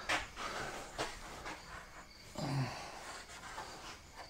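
Faint knocks and light scraping as a steel rack frame is shifted into place on a plywood shelf. One knock comes right at the start and another about a second in, and a short low grunt follows a little over two seconds in.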